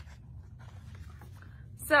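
Picture book being handled and closed: faint rustling and brushing of its paper pages and cover.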